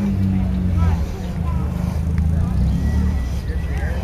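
A vehicle engine running with a steady low hum that dips slightly in pitch in the first second, with people talking in the background.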